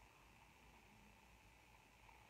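Near silence: faint room tone and hiss in a pause between sentences.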